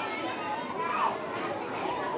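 Many children chattering at once: a steady babble of overlapping young voices, with no one voice standing out.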